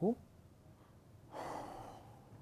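A man's sharp, breathy exhale of exasperation, about a second and a half in, lasting about half a second.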